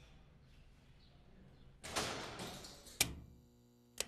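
A heavy door being opened: a rushing scrape about two seconds in that fades and ends in a sharp clunk. A steady hum follows, and a switch clicks at the very end.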